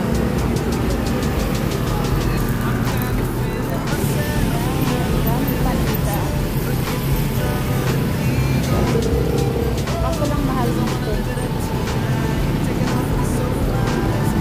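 A pop song with vocals plays steadily over the bustle of a busy street market.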